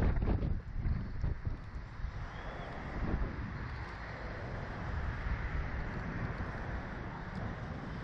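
Wind rushing over an onboard camera's microphone as a Slingshot reverse-bungee ride capsule swings and flips in the air: a steady rushing noise with heavy low rumble.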